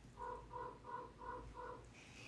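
A bird calling five times in short, evenly spaced notes, faint.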